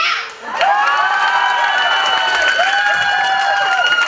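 An audience cheering and shouting together. After a brief lull, many voices rise about half a second in and hold long, loud yells.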